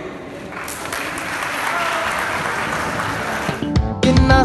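Audience applauding, starting about half a second in and stopping suddenly near the end, where music begins.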